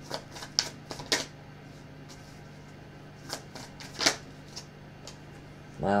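A deck of tarot cards being shuffled by hand: irregular light snaps and flicks of the cards, a few sharper than the rest, as a card flies out of the deck.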